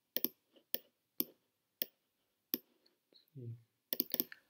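Computer mouse clicking: about half a dozen sharp single clicks, spaced roughly half a second apart. A short low voiced sound comes shortly before the end.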